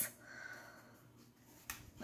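Quiet handling of paper-and-cardstock flipbooks: faint rustling, then a short tap near the end.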